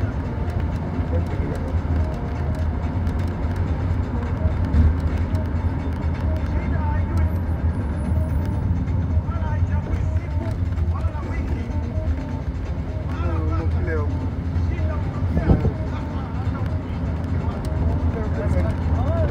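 Steady low rumble of a moving bus's engine and road noise, heard from inside the bus, with people's voices over it in the second half.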